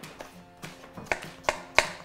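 Chef's knife chopping cucumber on a plastic chopping board: a string of sharp taps that grow louder and closer together from about a second in, over quiet background music.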